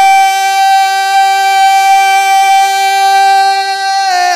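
A male naat reciter holding one long, steady sung note on a single pitch into a microphone, unaccompanied.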